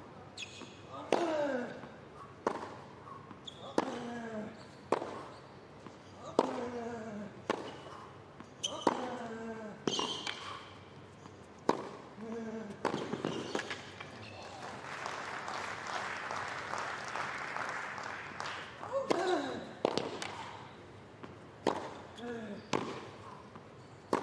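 Tennis rally on a hard court: sharp pops of rackets striking the ball and the ball bouncing, about one a second, with players grunting on many of their shots. The rally stops about halfway through and a few seconds of scattered applause follow, then a serve and another rally with grunts.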